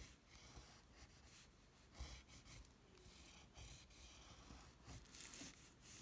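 Faint scratching of a pencil on paper, in a run of short, repeated drawing strokes.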